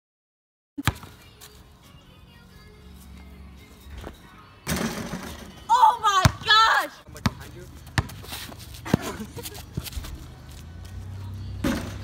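A basketball bouncing on the asphalt driveway and coming off the hoop, with several sharp bounces about a second apart in the second half, along with brief shouts.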